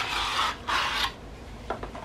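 Plastic packaging tray sliding out of a cardboard phone-case box: two rasping scrapes of plastic against cardboard in the first second, then a few light clicks.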